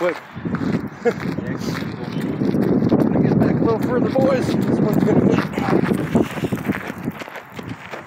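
Hurried footsteps crunching on gravel, with wind noise on the microphone.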